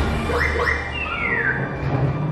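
Sci-fi ride soundtrack over speakers: a steady low rumble, with two quick rising electronic chirps about half a second in, then a longer whistle falling in pitch around a second in.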